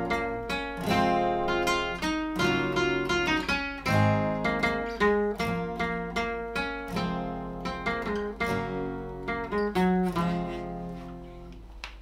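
Two acoustic guitars played together, strummed chords under picked melody notes. The playing trails off near the end.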